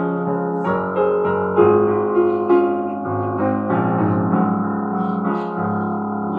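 Piano playing the accompaniment of a choir hymn as an interlude, chords changing about once a second, with the choir mostly not singing.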